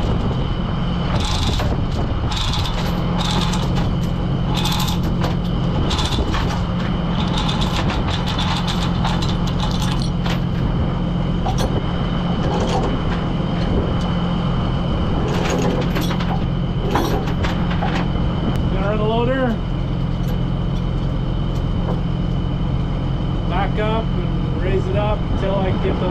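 A heavy diesel engine idles steadily while a steel chain and shackle clink and rattle as they are hooked onto a lifting eye, the metal clicks coming thick through the first two-thirds and stopping after about 17 seconds.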